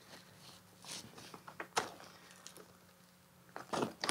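Faint handling noise from a photography softbox: soft rustling of its fabric and a few light clicks of its metal rods against the speed ring, the loudest a sharp click a little under two seconds in.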